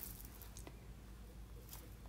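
Quiet room tone with a faint steady low hum and one faint tick about two-thirds of a second in.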